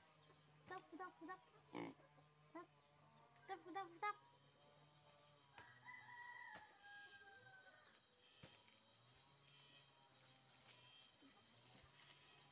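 A rooster crowing faintly: one long call about six seconds in, lasting about two seconds, its pitch slowly falling.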